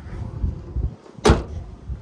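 The bonnet of a Ford Transit Custom van being shut: one sharp metallic bang a little over a second in, after some low rumbling.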